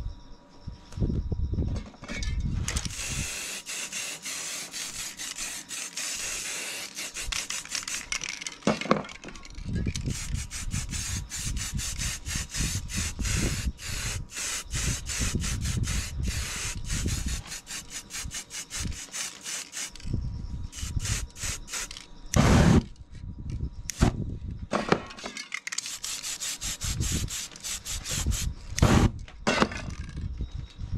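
Aerosol spray-paint can spraying in bursts: a steady hiss held for a few seconds at a time, alternating with a run of quick short sprays. A few louder knocks come about two-thirds of the way through.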